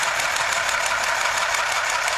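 Handheld cordless sewing machine running, its needle mechanism stitching in a rapid, steady clatter.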